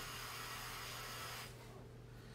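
Faint steady hiss of background room noise, dropping lower about one and a half seconds in.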